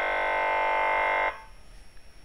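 A steady electronic buzzing tone from the computer's sound output, many pitches held at once without change, cutting off abruptly about a second and a half in.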